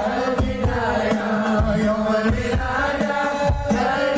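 Amplified sholawat chanting by massed voices, carried on a sung melody, over low frame-drum beats in a recurring rhythm.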